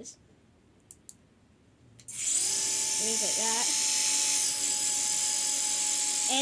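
Flying orb ball toy's small propeller motor starting suddenly about two seconds in and then whirring steadily, after two faint clicks about a second in.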